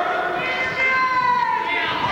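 Spectators yelling long, drawn-out, high-pitched shouts over one another, the pitch sagging slightly as each is held.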